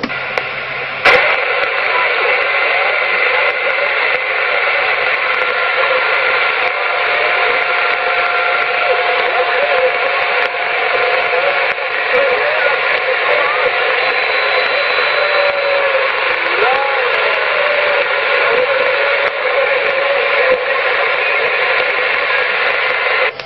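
A 27 MHz CB radio receiver plays a weak incoming transmission from a mobile station: steady loud hiss with a faint, garbled voice buried in it, too weak to understand. It starts with a click about a second in as the signal comes up. The signal is fading because the mobile station is down in a dip in the road.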